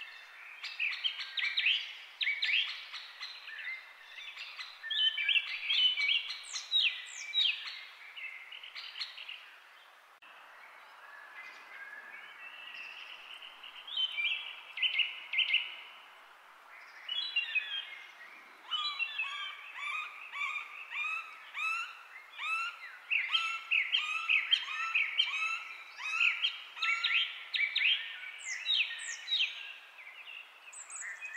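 Birds chirping and singing, many calls overlapping. There is a quieter lull about a third of the way through, and later one bird repeats a short note over and over.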